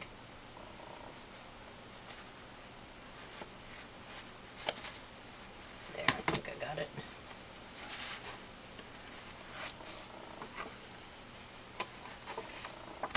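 Paper and a cardstock file folder being handled on a craft table: scattered sharp taps and rustles, the loudest about six seconds in, over a steady faint hum.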